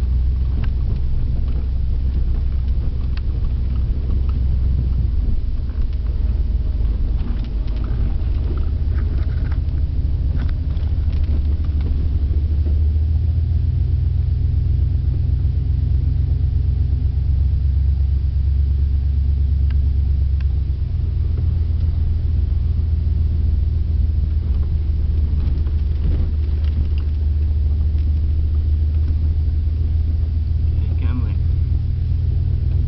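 Dodge Dakota pickup's engine running on wood gas, heard from inside the cab as a steady low rumble with road noise while driving. The engine note steps up slightly about halfway through and drops back a few seconds later.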